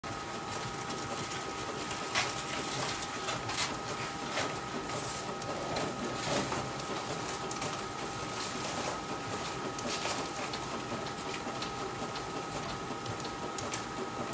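Softball bat being rolled by hand between the rollers of a bat-rolling machine to break it in: a continuous rolling, rubbing sound with irregular light clicks and knocks, a few louder swells, and a faint steady hum underneath.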